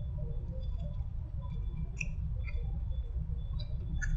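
A person biting and chewing a sauced, breaded chicken nugget: scattered small mouth clicks and soft crunches over a steady low room hum.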